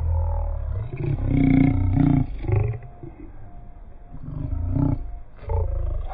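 A man's voice close to the microphone in several loud, wordless bursts, with a deep rumble underneath.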